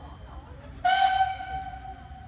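Steam locomotive's whistle blown once, about a second in: a single steady tone, loud at first and then held more quietly.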